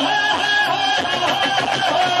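Live Punjabi song: a male singer sings into a stand microphone over band accompaniment, heard through the PA. Near the end he starts a long held note that slides slowly down.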